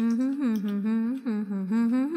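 A woman humming a tune with no accompaniment, her pitch rising and falling in short phrases.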